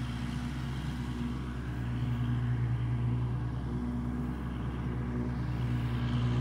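Kubota L2501 tractor's diesel engine running steadily at a constant working speed while mowing with a finishing mower.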